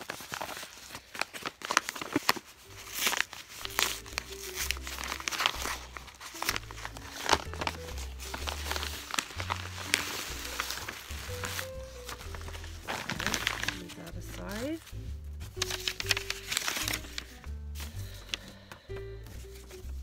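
Kraft paper mailer envelope crinkling and rustling as it is handled and opened by hand, in many sharp irregular rustles, over background music.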